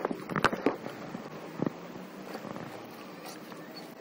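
Small dog gnawing and mouthing a rubber toy: a quick run of sharp clicks and scuffs in the first second, another burst about a second and a half in, then softer scattered ticks.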